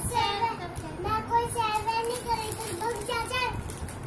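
Young girl's high-pitched voice talking in Hindi, in short phrases.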